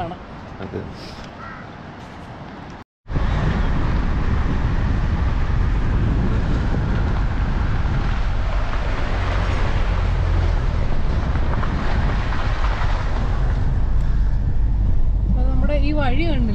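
Steady, loud road and wind noise inside a moving car: a dense low rumble with a hiss above it. It starts abruptly at a cut about three seconds in.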